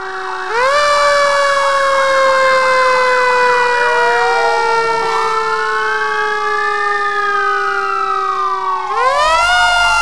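Fire engine siren sound effect, loud: a fast warble at first, then a wail that climbs about half a second in and slides slowly down while a second siren tone rises and falls over it, climbing again near the end.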